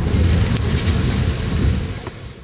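A loud rushing noise, heaviest in the low end, lasting about two seconds and fading near the end.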